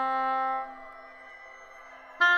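A single held note near middle C from oboe with live electronics. It is loud for under a second, then drops to a faint sustained tone.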